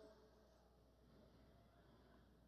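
Near silence: faint room tone, with the last echo of the imam's chanted voice dying away at the very start.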